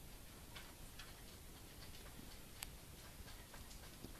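Near silence: quiet room tone with faint, irregular small clicks, one sharper click about two and a half seconds in.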